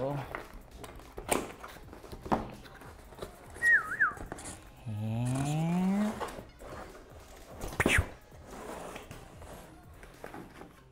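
Cardboard box handled and its flaps opened, with several sharp knocks and taps, the loudest near the end. About four seconds in, a brief wavering whistle-like tone sounds, then a low tone rises steadily for about a second.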